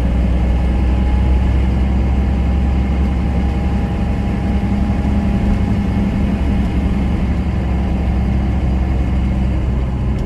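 Cab interior sound of a 1993 Dodge Ram 250's 5.9-litre Cummins 12-valve inline-six turbo diesel running steadily at cruise, with tyre and road noise, as the truck drives along.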